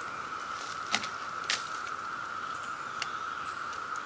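A few sharp clicks from handling a tree-saddle platform's strap and cam buckle on the trunk: two about a second in, half a second apart, and a fainter one later. Under them runs a steady, high insect drone.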